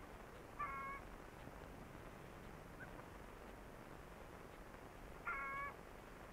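Two short animal calls about four and a half seconds apart, each a brief cry held at one pitch, over a steady hiss.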